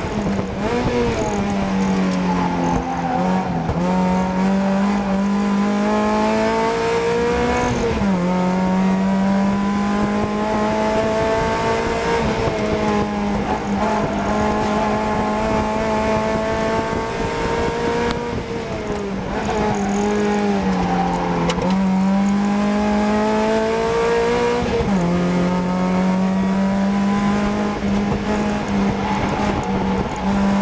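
Race-prepared Mazda MX-5's four-cylinder engine heard from inside the cockpit at racing speed. The revs climb slowly, then fall away sharply twice, about 8 and 25 seconds in, with shorter dips in between, under a steady drone.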